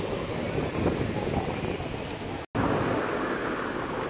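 Steady outdoor city-street background noise, a low rumble with no single clear source, broken by a split-second silent gap about two and a half seconds in.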